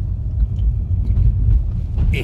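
Low, uneven rumble of a car on the move, heard from inside the cabin: engine and tyre road noise.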